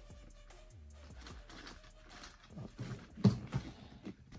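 Faint background music, then a few sharp knocks and scuffs of a cardboard collector box being handled on a table, the loudest a little past three seconds in.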